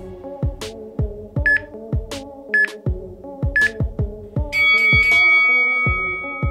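Workout interval timer counting down the end of a rest: three short beeps about a second apart, then a longer, louder multi-tone signal as the next round starts. Electronic background music with a steady kick-drum beat runs underneath.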